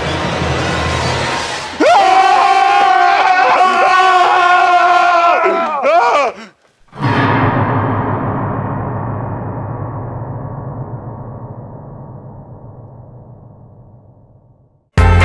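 Dramatic horror-style musical sting. A swelling rise leads into a loud, held, wavering chord for about four seconds, which cuts off abruptly. Then a deep booming hit fades away slowly.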